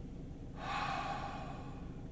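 A man drawing one slow, deep breath in, lasting about a second and a half and starting about half a second in.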